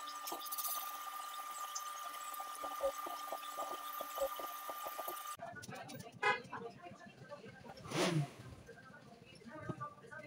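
Bench brake lathe running with a brake disc mounted on its arbor: a steady whine with light ticking. About five seconds in, the machine sound cuts off and gives way to irregular workshop noise, with a brief voice-like call near the end.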